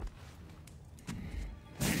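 Film soundtrack sound effects over a low, steady music drone: a low rumble about a second in, then a sudden loud rush of noise near the end.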